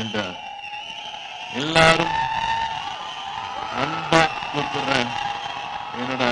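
A man speaking into a microphone over a PA, in a few short phrases with pauses between them.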